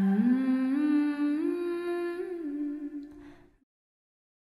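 The closing of a song: a singer's held, wordless hummed note that steps up in pitch a few times and fades out about three and a half seconds in.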